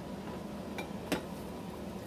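Two light clicks of a metal ice cream scoop, a third of a second apart, the second louder, over a steady low hum.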